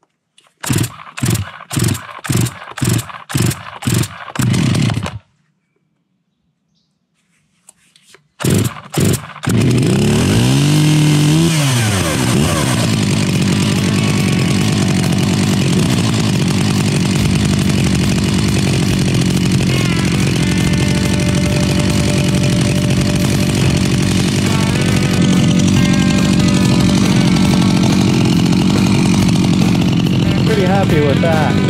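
Two-stroke chainsaw being started after sitting unused, with a carburettor that needs tuning. It fires in about eight quick loud bursts and dies. After a pause of a few seconds it catches, revs up and back down once, and settles into steady running to warm up.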